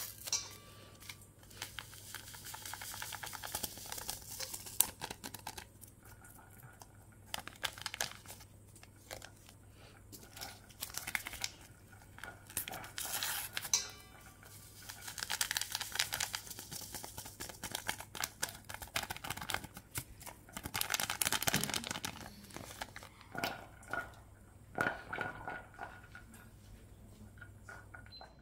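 Small vanilla sugar sachets being torn open, crinkled and shaken out over a steel mixing bowl of flour, in repeated bursts of tearing and rustling.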